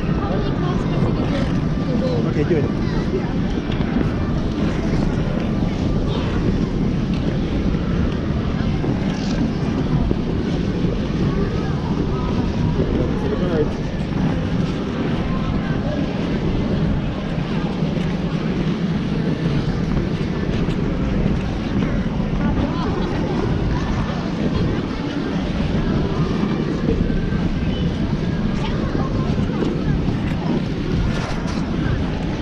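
Busy indoor ice rink heard from a body-worn camera while skating: a steady low rumble of air and clothing moving against the microphone, under the indistinct voices of the crowd of skaters.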